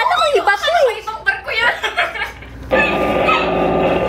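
People talking and chuckling. From a little under three seconds in, a steady rushing noise comes in under the voices.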